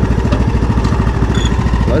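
John Deere 100 Series riding lawn mower's engine running steadily, with an even low firing pulse.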